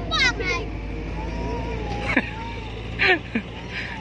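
Young children's high-pitched calls and squeals while playing, short sharply falling cries near the start, about halfway and near the end, over a steady low engine-like drone.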